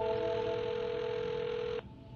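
Telephone ringback tone heard through a phone earpiece while an outgoing call rings: one steady tone lasting just under two seconds, then cutting off.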